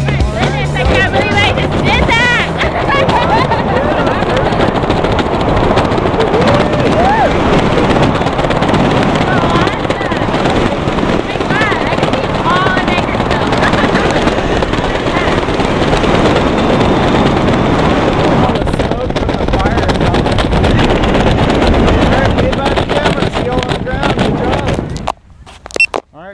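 Wind rushing over the camera microphone during a tandem parachute ride, with voices whooping and laughing through it. It cuts off suddenly near the end.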